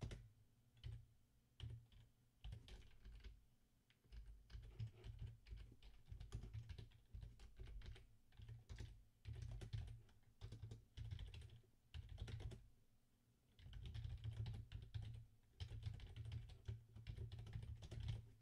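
Faint computer keyboard typing in irregular runs of keystrokes with short pauses between them.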